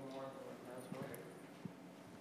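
Faint, unintelligible murmur of voices in a lecture room, with a few small knocks.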